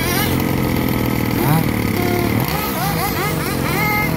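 Radio-controlled model car running with a steady engine-like drone, with people's voices over it.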